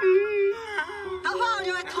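A person's voice wailing and whimpering with a wavering pitch, in comic distress, over background music with long held notes.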